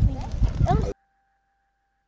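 A group of young voices chattering around a campfire, cut off abruptly about a second in.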